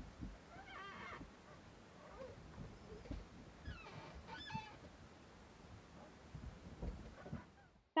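A sailing yacht's steering gear and steering cables squeaking as the helm moves, faint honk-like squeaks that glide up in pitch, one about a second in and a longer run around four seconds in, over a low rumble. The cables squeak incessantly even after being lubricated.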